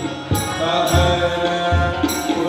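Hindu devotional song for the raslila: a chant-like sung melody with low hand-drum strokes, heard through the stage sound system.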